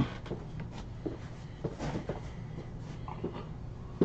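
Scattered soft knocks, clicks and rustles of things being handled in a small room, over a low steady hum.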